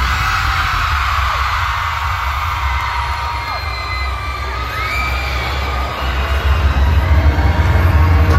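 A large arena crowd of fans screaming and cheering with long, high-pitched screams, over a deep bass from the concert sound system during the show's intro. The bass and the crowd grow louder near the end.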